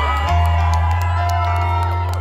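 Live band music played loud through a concert PA: long sustained deep bass notes under held keyboard chords, the bass moving to a new note shortly after the start, with crowd whoops and cheers over it.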